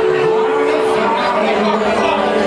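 A woman singing into a microphone over a live band with drums and electric bass; a held note gives way to a moving vocal line about halfway through.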